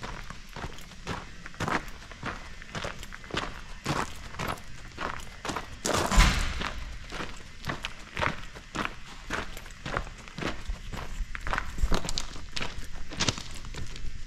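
Footsteps of a person walking on gravelly ground, about two steps a second, with one louder scuff or thump about six seconds in.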